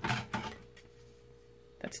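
A few light clicks and knocks of plastic and wood-veneer car trim pieces being picked up and handled, in the first half-second. Then near quiet with a faint steady hum.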